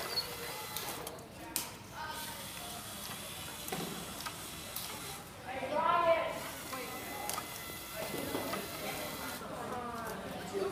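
Classroom room noise with a voice talking about six seconds in and a couple of light knocks earlier on.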